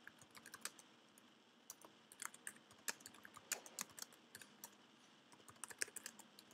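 Typing on a computer keyboard: faint, irregular keystroke clicks, with a short pause about a second in before the typing picks up again.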